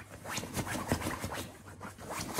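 A Shiba Inu scrabbling and digging at a fleece blanket and the fabric of its pet bed: a run of quick, irregular scratching rustles that eases off near the end.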